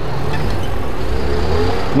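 Road traffic: a motor vehicle's engine running close by, with its note rising over the second half as it accelerates, over a steady low rumble of passing cars.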